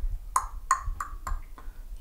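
A quick run of short, sharp clicks made by a person: four crisp ones about three a second, then a fainter fifth.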